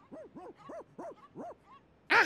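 Cartoon monkey vocalizing: a run of about five or six short hooting calls, each rising and then falling in pitch.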